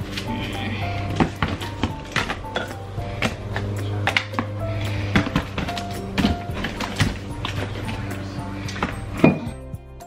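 Background music with a steady bass line, over repeated knocks and clunks of toiletries and a wicker basket being set into a clear plastic storage bin. The sharpest knock comes near the end.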